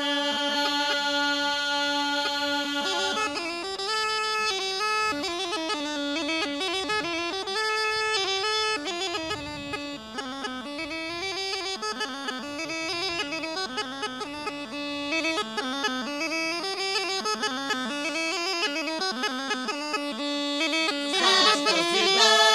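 Rhodope kaba gaida, the large sheepskin-bag bagpipe, playing solo. It opens on a long held note, then runs into a quick, heavily ornamented melody over its steady drone, and grows louder near the end.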